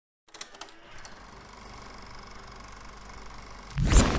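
Channel-logo intro sound effect: a few clicks, then a steady, faint TV-static hiss with a thin hum in it. Near the end it breaks into a sudden, much louder glitch burst of rapid stuttering ticks.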